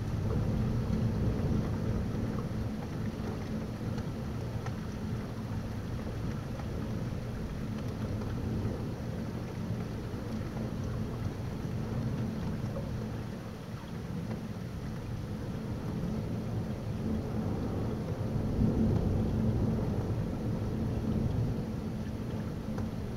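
Rolling thunder from a supercell storm, a low rumble that swells in the first few seconds and again late on, over steady rain.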